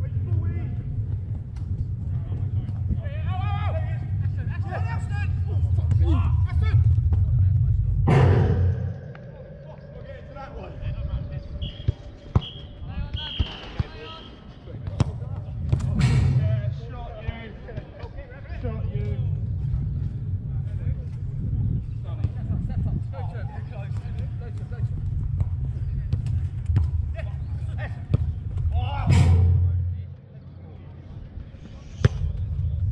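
Five-a-side football in play: players calling out, with a few sharp thuds of the ball being kicked, over a steady low rumble.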